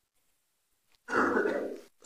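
A man clearing his throat once into a microphone, about a second in, lasting under a second.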